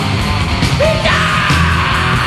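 German speed/thrash metal recording playing: dense distorted guitars and drums with a yelled vocal.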